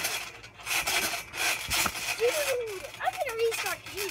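A trampoline being bounced on, with a rasping rub roughly once a second as the mat flexes under the jumper. Faint voices in the second half.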